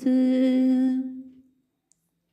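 A female voice holding one long, steady sung note with no accompaniment. The note fades out about a second and a half in, leaving silence.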